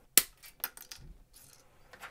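A sharp plastic click a moment in, then a few lighter clicks and taps as a white plastic model-kit parts runner (sprue) is handled.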